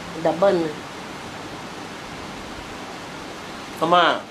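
Steady, even background hiss with no pitch or rhythm, between a brief bit of speech at the start and another word just at the end.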